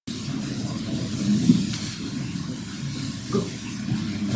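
Steady hiss of room noise picked up by the talk's microphone, starting abruptly, with a few faint low murmurs and a small bump about a second and a half in.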